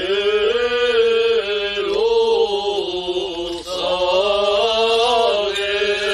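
Armenian Apostolic clergy chanting a liturgical hymn in long, held, melismatic phrases, with a short break between two phrases about three and a half seconds in.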